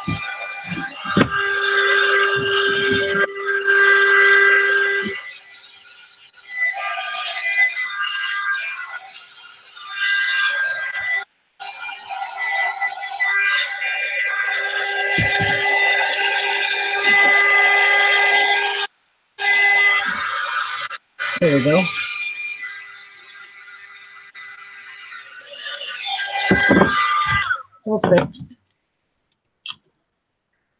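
Handheld craft heat gun running, a steady whine over a fan's hiss, blowing hot air to shrink a clear plastic bag around a bath bomb. The sound drops out completely three times for a moment, and turns uneven near the end.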